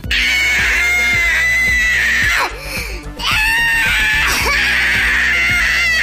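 A voice screaming in two long, high, wavering cries, the first about two seconds long and the second starting about three seconds in, over background music.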